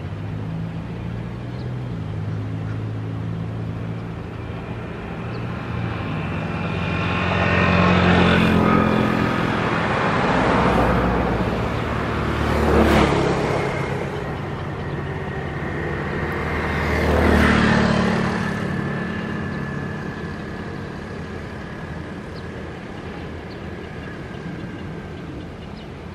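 Road vehicles passing close by one after another, each a swell of engine and tyre noise that rises and fades. The loudest passes peak about a third, half and three quarters of the way in.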